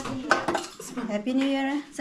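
Serving spoons and plates clinking against buffet trays as food is served out, with a few sharp clinks in the first half second.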